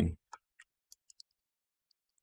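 A few faint, sparse clicks of a computer keyboard and mouse, scattered through the first second or so with one more near the end.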